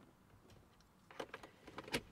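Faint clicks and taps from a USB car charger being handled in a 12 V socket, then a sharp single click near the end as the car's cigarette lighter pops out once heated, a sign that the socket has power again after the fuse was replaced.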